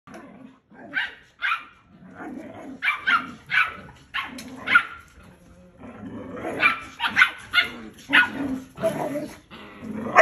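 Belgian Malinois puppy barking back in short, high-pitched yaps while adult dogs correct it, with growling between the barks. The barks come in quick bunches, with a short lull a little past the middle.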